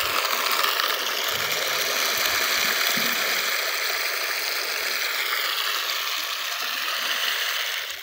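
Dry maize kernels poured in a steady stream from a plastic basin into a bucket, a continuous rushing hiss of grain that stops just before the end.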